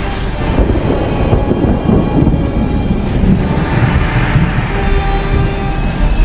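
Animated-film soundtrack: steady rain and a deep, pulsing rumble under dramatic music.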